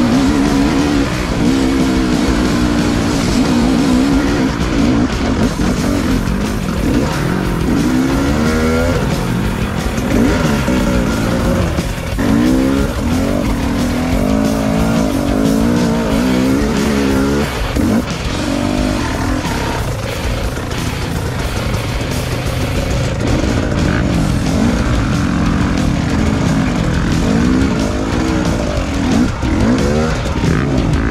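KTM 300 EXC two-stroke dirt bike engine under way, its pitch rising and falling again and again as the throttle is worked on a rough trail.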